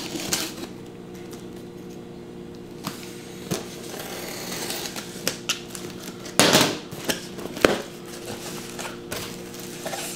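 A knife slitting the packing tape on a cardboard shipping box, with scraping and ticking of blade on tape and cardboard. The box flaps are then pulled open with a loud cardboard scrape about six seconds in and a sharp click shortly after. A steady low hum runs underneath.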